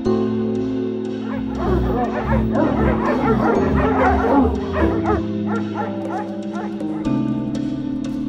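Several dogs barking and yipping together for a few seconds, starting about a second and a half in, over steady background music.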